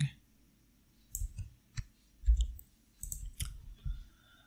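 Short, sharp clicks of a computer mouse and keyboard in scattered groups, as the user works the editing software. There is one duller, louder low thump a little past two seconds in.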